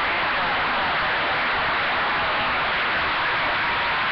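CB radio receiver giving out steady static hiss, with a faint, garbled voice from a distant station under the noise, too weak to make out.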